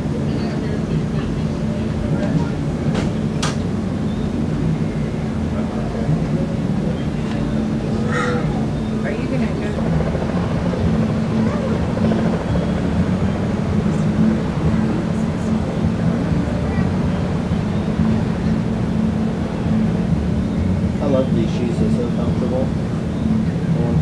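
A loud, steady low drone, machine-like, with indistinct voices underneath and a few faint clicks.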